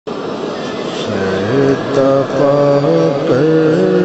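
A man's voice singing a devotional chant in long held notes that step up and down in pitch, over a faint hiss.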